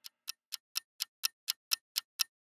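Fast, even ticking, about four clock-like ticks a second, with dead silence between the ticks.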